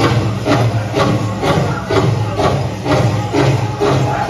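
Powwow drum group song: a large hand drum struck in unison in a steady beat of about two strokes a second, under the group's singing voices.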